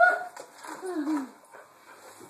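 Doberman whining for a teased treat: a steady high whine that breaks off just after the start, then a shorter, lower whine falling in pitch about a second in.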